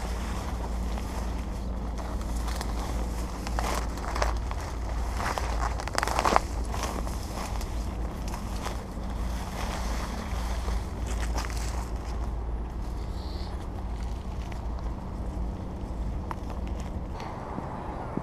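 Footsteps pushing through tall dry grass and reeds, with irregular rustling and crackling of the stems. Under it are a low wind rumble on the microphone and a faint steady hum.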